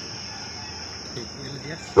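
A steady high-pitched tone or trill runs through a pause in the talk, with faint voices murmuring in the background.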